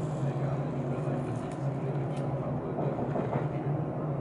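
A steady low hum fills the room, with a couple of short, sharp clicks and faint voices.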